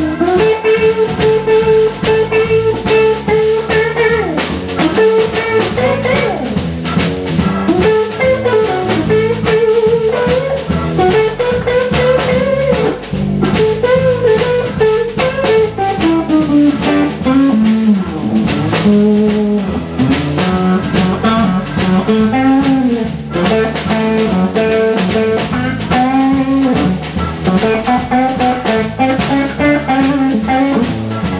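Live blues band playing an instrumental passage: electric guitar, bass guitar, keyboard and drum kit, with a lead line of held and bent notes over the rhythm section.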